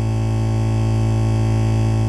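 A single low synthesizer chord held steady as a drone, unchanging throughout.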